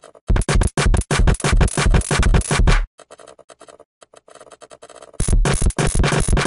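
A programmed drum-machine beat in Ableton Live's Drum Rack, made of sampled analog-style kick, hi-hat, clap and cymbal hits, plays back for a few seconds. It stops, leaving only faint clicks, and starts again about five seconds in.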